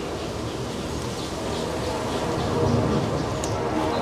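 Steady outdoor background noise, a low rumble with a faint steady hum, without any distinct event.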